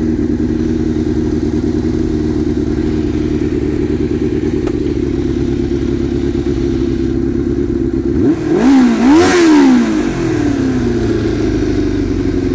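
Kawasaki GPZ 550's inline-four engine idling steadily, then revved twice in quick succession about eight seconds in, the second rev higher, before dropping back to a steady idle.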